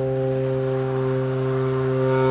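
Tenor saxophone holding one long low note, steady in pitch and loudness, with a full stack of overtones.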